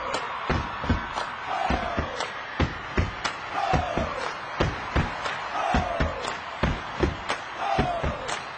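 Step team stomping and clapping in a quick, even rhythm over crowd noise, with a short falling tone repeating about once a second.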